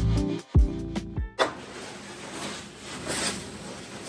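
Guitar-style background music that stops about a second in, followed by a faint, steady sizzle of egg batter cooking on an electric griddle.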